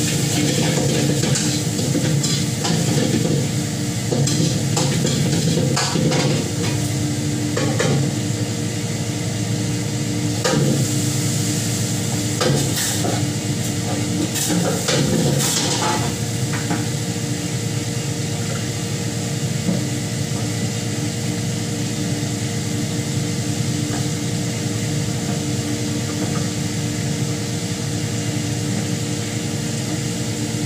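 Metal ladle stirring and scraping in a large steel pan of food cooking on the stove, with sizzling and frequent clinks of metal on metal in the first half, over a steady kitchen hum.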